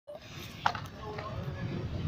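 Low wind rumble on the microphone with faint voices, and one sharp knock about two-thirds of a second in.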